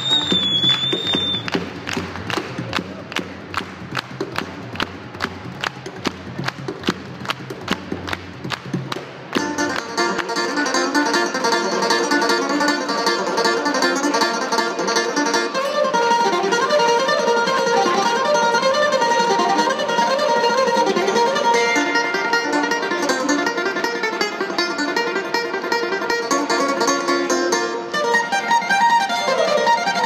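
Live Irish folk music. For about the first nine seconds a steady beat of hand claps and bodhrán plays, with a short high whistle at the very start. Then banjos, guitar and mandolin come in together with the bodhrán, playing a fast tune.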